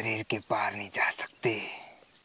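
A man's voice speaking in short, broken phrases that trail off near the end.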